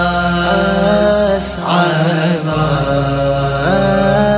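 Wordless chanted vocals from a Shia latmiya (devotional lament). The notes are held long and step up and down in pitch over a low steady drone.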